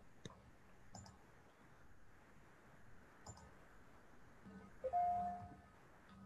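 Faint computer mouse clicks, three or four spaced apart, over quiet room tone; about five seconds in, a brief steady single-pitched tone sounds.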